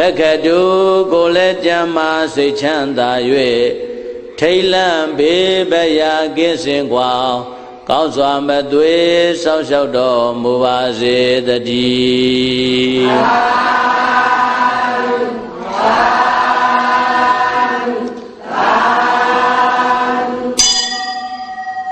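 A voice chanting Pali paritta verses in melodic Buddhist recitation. From about thirteen seconds in, the chant moves to long, level held notes in three phrases.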